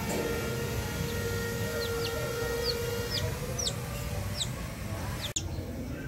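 Newborn chick peeping: a run of about eight short, high peeps, each falling in pitch, starting about two seconds in, over steady background noise.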